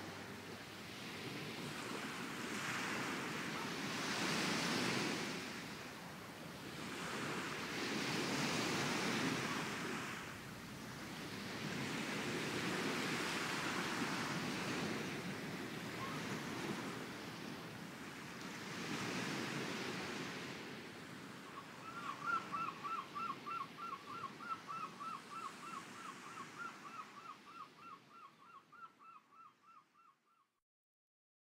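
Sea waves washing on a shore, surging and ebbing every four to five seconds. About two-thirds of the way through, a high repeating chirp, about three pulses a second, joins in. Both fade out near the end.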